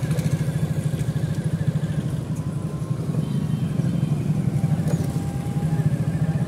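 Motorcycle engine running steadily, with a fast, even throb.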